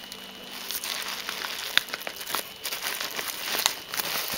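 Bubble wrap crinkling and rustling as it is handled, with scattered sharp crackles.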